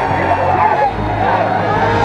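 Many voices shouting and cheering at once, a crowd celebrating a win, over a steady low rumble.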